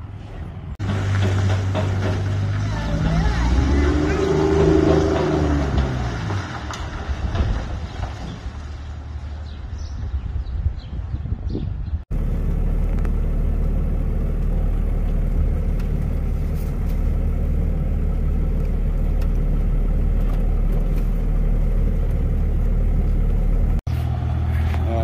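Second-generation Dodge Cummins turbo-diesel pickup pulling a loaded gooseneck trailer. Its engine starts about a second in and rises, then falls in pitch a few seconds later. From about halfway there is a steady low engine drone.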